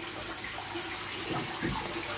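A stream of water pouring into a large aquarium as it is refilled during a water change, splashing steadily onto the surface.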